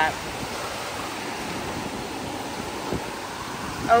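Small waves breaking and washing up over a sandy beach: a steady rush of surf.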